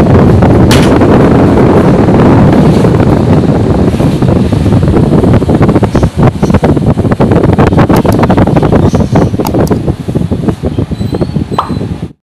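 Panasonic inverter window air conditioner running on test after its leak repair and refrigerant recharge, its blower's air stream rushing loudly onto the microphone with a crackling buffet. The rush eases somewhat over the last two seconds.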